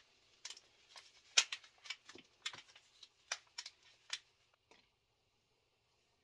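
Thin plastic seedling tray crackling and clicking as gloved hands squeeze and flex a cell to pop a lettuce seedling out. The clicks come irregularly, a dozen or more, and stop about a second before the end.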